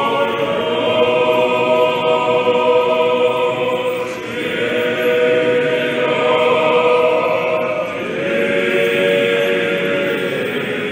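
Choir singing Orthodox liturgical chant in long, sustained chords, with a break between phrases about four seconds in and again near eight seconds.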